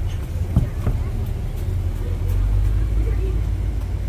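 A van driving past, its engine a low rumble that swells in the middle, with a brief thump about half a second in.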